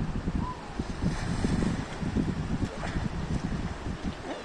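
Gusty wind buffeting the microphone, a low, uneven rumble that rises and falls in gusts.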